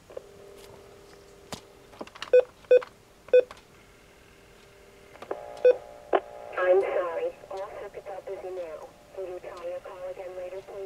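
Telephone dial tone from a desk phone's speakerphone, with a few digits keyed in as short touch-tone beeps. A recorded voice then plays over the line about two-thirds of the way in, the sign that the outgoing call is blocked because all the switch's outgoing trunks are busy.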